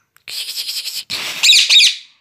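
Indian ringneck parakeet chattering for under a second, then giving two loud, shrill squawks in quick succession near the end.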